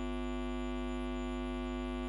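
Steady electrical mains hum with a stack of buzzing harmonics, unchanging throughout, heard in a pause of the speech through the microphone and sound system.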